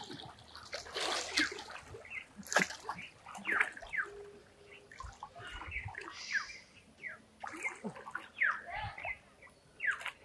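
Water splashing and sloshing in irregular strokes as a person swims through a river.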